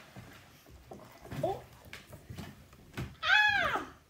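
A woman's short 'Oh', then near the end a loud, high-pitched 'Ah!' that rises and falls in pitch, over scattered light knocks and shuffling of people leaving their chairs at a wooden table.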